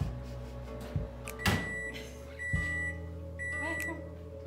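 A microwave oven beeping three times, about a second apart, each a single steady high tone about half a second long, over background music.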